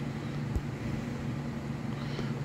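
Steady low background hum between spoken phrases, with one faint short tap about a quarter of the way in.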